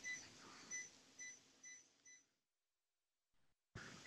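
Faint electronic beeping from cath-lab equipment: a run of short, evenly spaced beeps, a little under three a second, that stops a little over two seconds in. Near silence follows.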